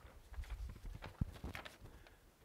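Faint, irregular knocks, clicks and low thumps from a person moving at a whiteboard, with one sharp click a little past the middle.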